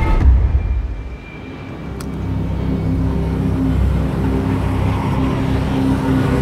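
Horror-trailer sound design: a deep low rumbling hit that fades within about a second, then a low droning swell with steady held tones that slowly builds.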